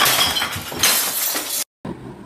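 Glass and other objects being smashed with a swung stick or club: crashing, breaking glass and clinking debris, with a second crash a little under a second in, cut off suddenly near the end.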